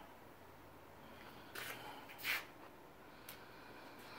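Quiet room with a few soft, brief rustling sounds: one about one and a half seconds in, a slightly louder one just after two seconds, and a faint click near the end.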